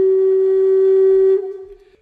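Solo flute music, holding one long low note that fades away about a second and a half in.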